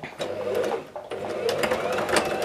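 Brother domestic sewing machine stitching a seam through cotton fabric, running with a brief dip about a second in.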